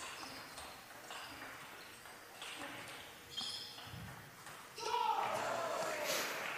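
Table tennis rally: the plastic ball clicks sharply off bats and table, with short high squeaks of shoe soles on the court floor. About five seconds in comes a louder voice call that falls in pitch, a shout as the point ends.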